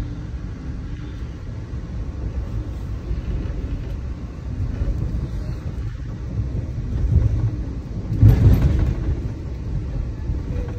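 Steady low rumble of a moving passenger train heard from inside the coach, with a louder rushing surge about eight seconds in.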